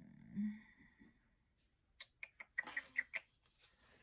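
A short hummed 'hmm' of thought near the start. Then, about two seconds in, a second-long cluster of quick clicks and small high squeaks as sticker sheets are handled.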